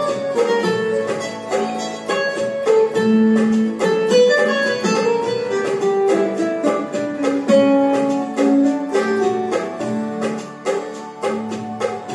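Korg electronic keyboard playing a song melody with both hands, the right hand's tune on a plucked, guitar-like voice over held lower chords and a steady rhythm accompaniment.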